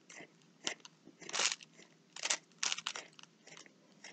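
Coloured pencil scratching across paper in a series of short, irregular shading strokes.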